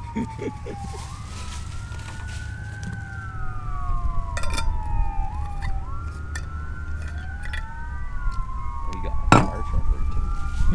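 Several emergency-vehicle sirens wailing at once, each slowly rising and falling in pitch and overlapping one another, over a steady low rumble. A sharp click sounds about nine seconds in.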